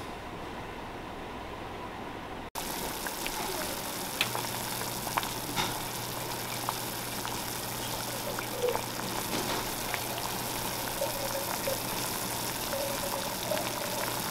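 Pot of water with sassafras root pieces at a rolling boil on an electric stove: a steady bubbling hiss with scattered small pops, beginning suddenly about two and a half seconds in. A low steady hum comes in about four seconds in.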